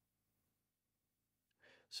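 Near silence, then a short intake of breath near the end as speech begins.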